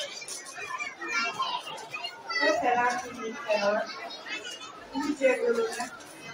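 A woman speaking into a microphone, with children's voices and chatter mixed in.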